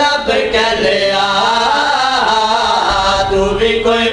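A man chanting a devotional Shia recitation into a microphone over a PA, in long, drawn-out notes that bend up and down.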